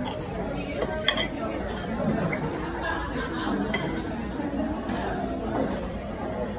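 Restaurant dining room sound: a steady background chatter of many diners, with clinks of cutlery and dishes, a sharper clink about a second in.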